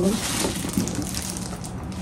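A steady rushing noise with a low, even hum underneath.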